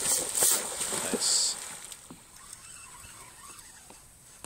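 A hooked tarpon of about 160 lb splashing as it leaps and crashes back into the water. The splash is loud for the first second and a half, then dies away.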